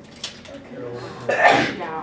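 A single loud sneeze about one and a half seconds in, sudden and short, over low voices.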